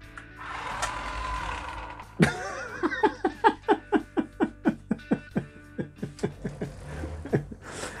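Small electric drive motor and plastic gearbox of a toy-grade RC forklift whirring with a steady whine for about two seconds as it drives forward. After that, plucked-guitar background music with notes about three or four a second takes over.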